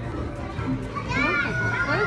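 Busy arcade din: high-pitched children's voices over a steady crowd hubbub. A long steady electronic tone from a game machine starts just past halfway.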